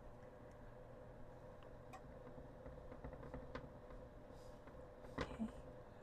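Quiet kitchen room tone: a faint steady hum with a few soft ticks.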